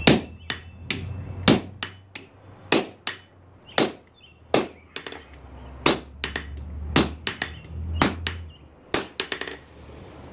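Blacksmith's hand hammer striking a red-hot steel knife blank on an anvil: heavy blows about once a second with lighter taps in between, each with a short metallic ring. The hammering stops near the end.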